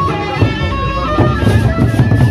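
Gendang beleq ensemble playing: large Sasak barrel drums struck with mallets in a driving rhythm, with a held high melody line sounding above the drums.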